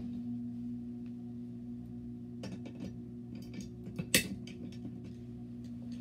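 A steady low hum, with a few light clicks of a screwdriver and wiring being handled while a fire alarm strobe is connected. The sharpest click comes about four seconds in.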